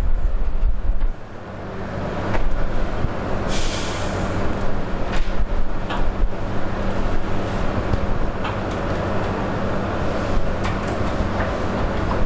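Steady background rumble and hiss with a low electrical hum under it, a brief hiss about three and a half seconds in, and a few faint clicks.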